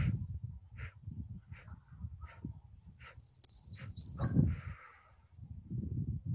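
Breath let out through pinched lips in a string of short puffs, the 'bump breathing' exhale of 4-7-8 breathing. A bird gives a quick high trill for about a second near the middle.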